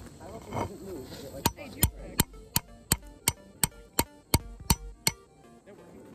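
Railroad spike being hammered into the ground: a run of about eleven sharp metal strikes, about three a second, starting a second and a half in and stopping about five seconds in.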